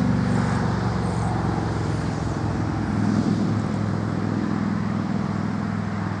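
Steady low hum of a motor vehicle engine running nearby, with a few faint high chirps of small birds in the first second or so.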